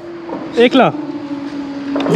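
A motorcycle engine idling with a steady hum. A man speaks briefly about half a second in.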